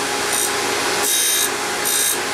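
Surface grinder grinding an Acme thread tool bit. The spindle runs with a steady hum, and the wheel's grinding rasp comes and goes in repeated passes: briefly near the start, for almost half a second about a second in, and again near the end.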